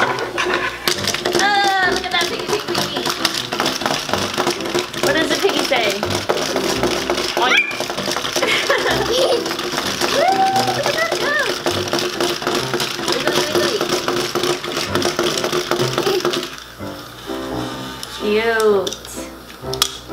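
Two battery-powered walking toy animals, a pig and a dog, running on a tabletop: a steady motor hum with fast clicking that stops about 16 seconds in.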